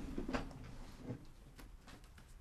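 A few faint, separate clicks and knocks of small objects being handled, the clearest about a third of a second in and fainter ones near the end.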